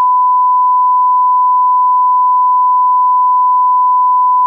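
Steady 1 kHz reference tone sounding with a color bars test pattern: one unbroken pure pitch, the line-up tone a TV station sends while it is off the air.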